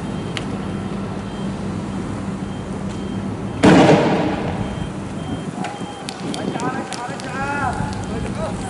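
A single loud bang from riot-police munitions about three and a half seconds in, fading out over about a second, over steady street noise. Near the end come a few short shouts from people in the street, with faint sharp cracks.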